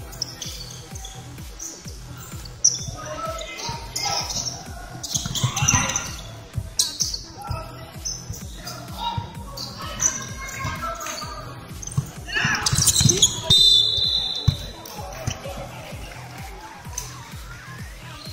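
Basketball bouncing on a wooden gym floor during play, with repeated knocks and scuffing footsteps echoing in a large hall, and a short high sneaker squeak a little past the middle.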